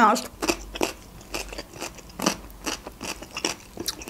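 Close-miked chewing of a mouthful of stuffed pepper, wet mouth clicks and smacks coming irregularly, about three or four a second.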